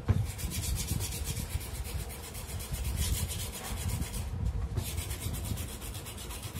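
Rapid back-and-forth hand rubbing on a ceiling fan's metal ring, scrubbing rust off it, with a sharp click just after the start and a brief pause in the strokes a little past four seconds.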